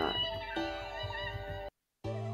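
Beat playing back from the LMMS project: a chopped melodic sample loop with wavering, gliding high notes over a steady bass. It cuts off abruptly near the end, as playback stops.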